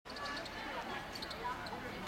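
Faint outdoor background of distant voices, with a few short light ticks.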